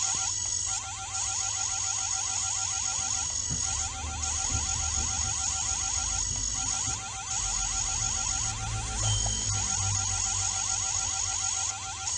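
Synthetic laser-beam sound effect: a rapidly pulsing electronic buzz, about eight pulses a second, under a steady high whine. It comes in several runs of about three seconds with short breaks between them.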